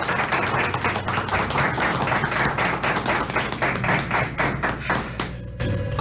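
A small group of people applauding with hand claps; the clapping dies away near the end.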